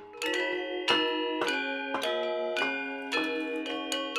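Balinese gamelan metallophones, a gender wayang quartet, struck with mallets in a steady run of quick notes, several a second, each ringing on into the next.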